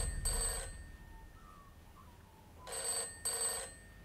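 Old rotary telephone's bell ringing in a double ring-ring, twice: one pair at the start and another about three seconds in. A low boom fades away under the first second.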